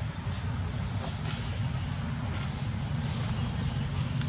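A steady low engine rumble, with faint scattered ticks above it.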